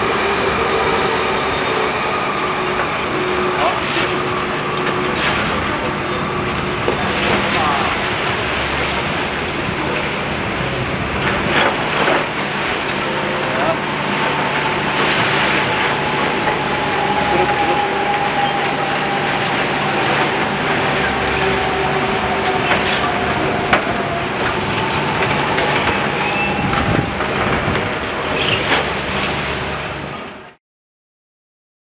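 Demolition excavator working a crushing grab on a brick and concrete building: a steady diesel engine and hydraulic hum with whining tones, broken by scattered sharp cracks and knocks of masonry being broken and falling.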